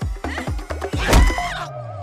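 Film soundtrack: music with sharp hits, and a drawn-out animal cry like a horse's whinny in the second half.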